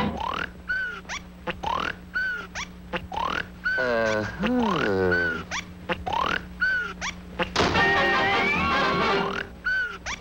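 Cartoon snoring sound effects: a rising whistle with a short peak about once a second, and one longer, deeper drawn-out snore in the middle. About three-quarters of the way through, brass band music starts.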